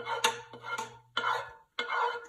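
A utensil scraping cooked vegetables off a skillet into a pot of broth, in three or four short scraping strokes with a sharp clink against the pan early in the first stroke.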